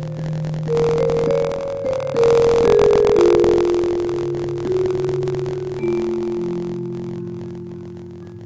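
Piano playing a slow, sustained passage: a melody stepping downward over held low notes, settling onto a long chord that fades toward the end. The recording quality is poor.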